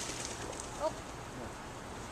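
Quiet, steady background noise with one brief, faint pitched sound a little under a second in.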